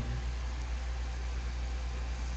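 A steady low hum with faint hiss: the constant background drone of the room and recording, heard in a pause between words.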